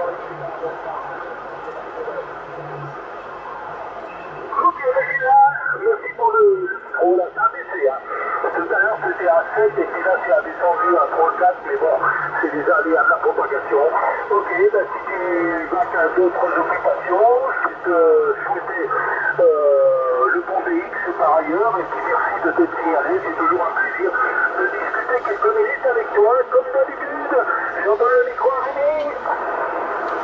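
A distant station's voice received in upper sideband on a Yaesu FT-450 transceiver on the 27 MHz CB band: a narrow-band radio voice over steady hiss, the voice coming in about four seconds in after a few seconds of hiss alone.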